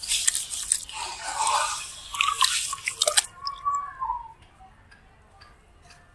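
Wet sand-cement lumps being squeezed and crumbled by hand under water in a basin: gritty crunching and sloshing with sharp crackles. It stops about three seconds in, leaving only faint scattered ticks and drips.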